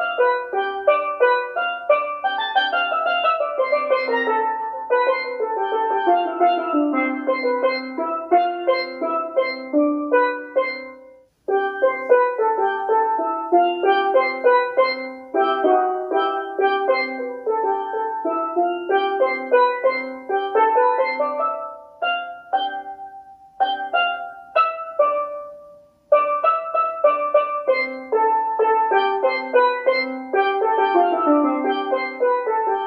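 A single steel pan struck with mallets, playing a melody in quick strokes. There are two brief breaks, about 11 and 26 seconds in.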